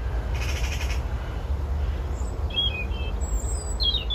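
Birds calling outdoors: a short call about half a second in, then brief high chirps near the end, over a steady low rumble of wind on the microphone.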